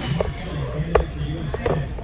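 Three short clinks of a metal fork against a ceramic plate, over a low murmur of voices.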